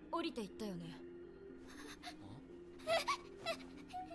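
Faint anime soundtrack: a character's high, wavering voice near the start and again about three seconds in, over soft sustained background music.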